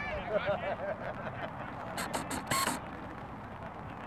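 People near the microphone talking, then a short breathy laugh about two and a half seconds in, over steady outdoor background noise.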